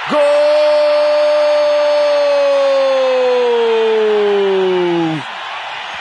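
A sports commentator's long drawn-out "Gol!" cry in Portuguese, one held note that sinks slowly in pitch and breaks off about five seconds in, over the steady noise of a stadium crowd.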